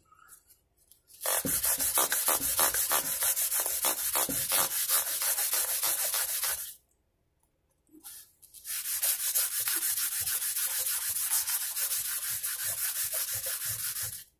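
A 320-grit abrasive pad on a fret-crowning block rubbed in quick back-and-forth strokes over a mandolin's metal frets, smoothing and polishing the fret crowns. It comes in two bouts of about five seconds each, with a short pause between.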